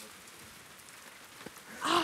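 Low, steady outdoor background hiss with a couple of faint taps. Near the end, a person's voice starts with a loud drawn-out cry.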